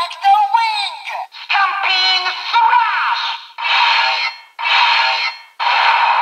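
Electronic sound playback from a Kamen Rider Revice DX Vistamp toy set through its small built-in speaker, thin with no bass. It plays a synthesized voice and jingle over music, then three short bursts of noisy effect sound.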